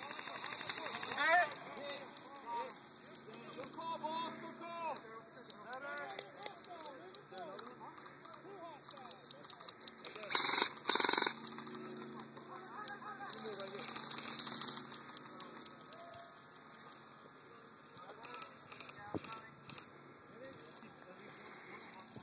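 Distant voices calling out across an open field, with scattered sharp pops and clicks and a short louder burst of noise about halfway through.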